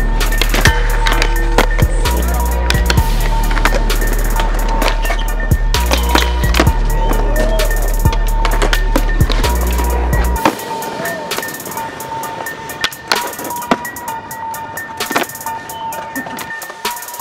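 Skateboards on concrete, with wheels rolling and boards clacking and landing, heard in sharp scattered knocks. They play over a music track whose heavy bass line drops out about ten seconds in.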